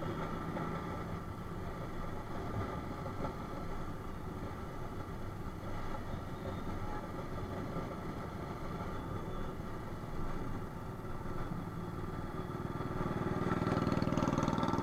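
A motorcycle engine running at a steady cruise, heard from the rider's own bike, with wind and road noise mixed in. It gets a little louder near the end.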